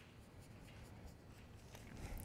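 Near silence, with only the faint rubbing of a hand stroking a cat's fur.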